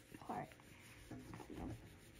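Faint, irregular scratching and rubbing of a small burnishing stick pressed over a rub-on transfer sheet on cloth, with one short spoken word near the start.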